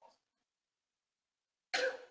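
Near silence, then a single short cough near the end.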